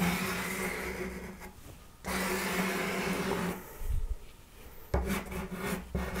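Soft pastel stick rubbed back and forth across pastel paper on a wooden board, laying in a broad area of dark green, in long passes with a short break about two seconds in. The rubbing goes quieter after about three and a half seconds, with a few shorter strokes near the end.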